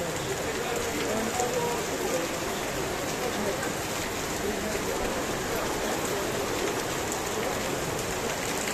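Heavy downpour of rain beating on a paved street and pavement, a dense, steady hiss and patter.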